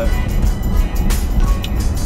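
Background music with a steady beat, over the low in-cabin drone of a pickup truck on the road.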